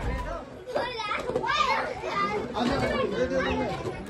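Many children's voices, with adults among them, talking and calling out over one another.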